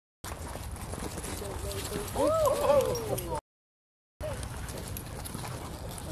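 Dogs running and scrabbling on ice, claws clicking, with a loud wavering vocal call about two seconds in that rises and falls in pitch. The sound cuts out completely for most of a second just after the call.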